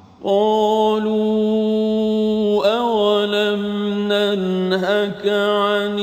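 A man reciting the Qur'an in Arabic in a slow, chanted style, holding long steady notes with brief melodic turns about two and a half and five seconds in.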